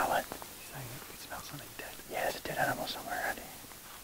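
Two men talking in low, hushed voices, close to a whisper.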